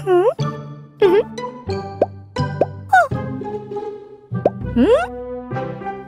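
Bouncy children's cartoon background music in short plucky notes, with four or five cartoon swoops that dip and rise sharply in pitch laid over it.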